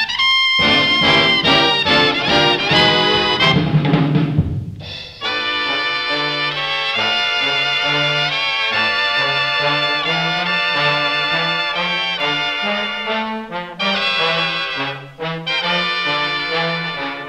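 Dance-band orchestra playing, with the brass section (trumpets and trombones) to the fore. Busy brass chords give way, about five seconds in, to a smoother held melody over a stepping bass line.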